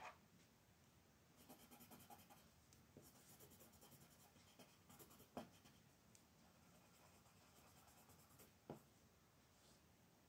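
Faint scratching of a coloured pencil shading on coloring-book paper in quick, repeated strokes, starting about a second and a half in and stopping near the end, with a few short taps along the way.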